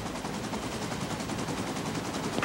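Police helicopter's rotor and engine noise heard from inside the cabin: a steady, rapid, even chop.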